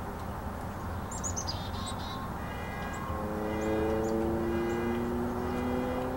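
A small songbird gives a quick series of high, down-slurred chirps about a second in. From about three seconds a steady hum of several tones sets in and slowly rises in pitch, over a constant low background rumble.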